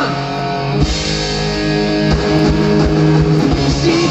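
Live indie rock band playing an instrumental passage with no vocals: electric guitar to the fore over bass and drums, amplified through a large PA.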